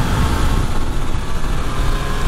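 Wind rushing over the microphone of a motorcycle in motion, over the Triumph Trident 660's inline three-cylinder engine running at steady revs as the bike cruises.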